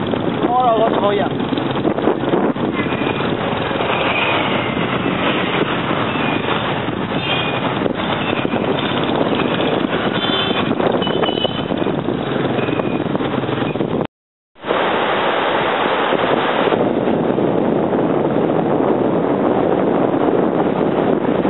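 Busy motorbike street traffic with several short high beeps among the noise. About fourteen seconds in it cuts off suddenly, and steady wind on the microphone with beach surf follows.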